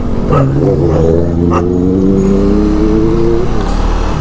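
KTM Duke 200's single-cylinder engine pulling in gear, its pitch rising slowly for about three seconds, then dropping as the throttle is eased near the end.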